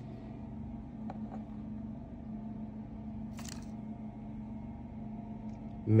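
A steady low hum, with a faint click about a second in and a short rustle or scrape near the middle, as eggs are handled on and off the scale.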